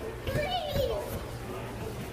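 A young child's voice making a short sliding vocal sound in the first second, over a steady low hum.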